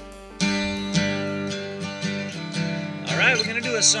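Steel-string acoustic guitar strummed in slow chords, starting about half a second in as the tail of a held music note dies away. A man starts talking over the guitar near the end.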